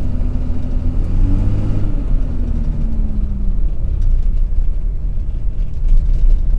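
Dodge RAM 2500's Cummins inline-six turbo diesel heard from inside the cab while driving: a steady low rumble, with a humming tone that fades out about three and a half seconds in.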